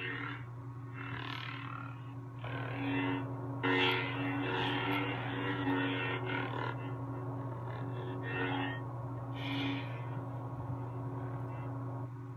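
Lightsaber sound board (Verso) in a Saberforge Reliant hilt playing its steady low electric hum through the hilt's speaker. Several smoothswing swooshes swell and fade over the hum as the hilt is waved, the longest and loudest running from about four to six and a half seconds in.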